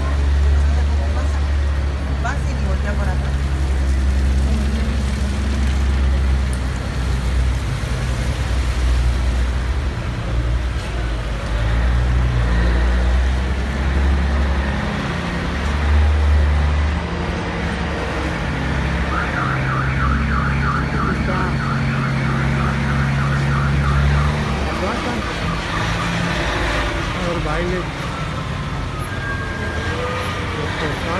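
Street traffic: a steady low rumble of vehicle engines, with a fast run of high, evenly repeated chirps, about three a second, lasting some six seconds past the middle.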